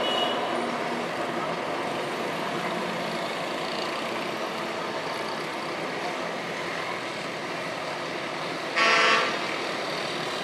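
Steady din of morning street traffic, with motor vehicles running along the road. Near the end a vehicle horn gives one short honk, the loudest sound.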